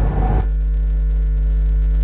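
Steady electrical mains hum, a low buzz with a stack of evenly spaced overtones, that starts about half a second in and holds unchanged.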